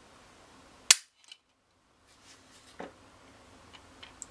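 Ruger 22/45 Lite dry-firing as a trigger gauge pulls the trigger through its break: one sharp click as the hammer falls about a second in, then a softer knock about two seconds later. The trigger, with its sear and trigger bar polished, breaks at about three and a half pounds.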